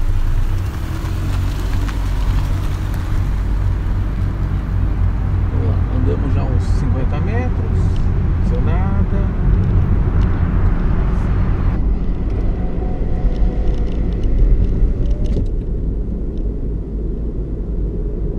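JAC T50 SUV's 1.6-litre 16-valve four-cylinder engine and tyres as the car pulls away and drives, a steady low rumble.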